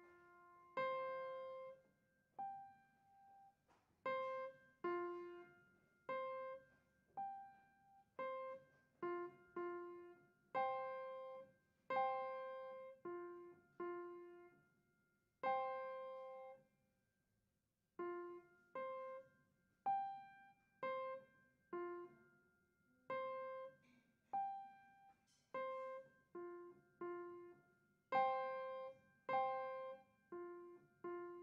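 A beginner playing a simple melody on a piano, one note at a time, about one note a second, each left to ring and fade, with a short pause a little past halfway.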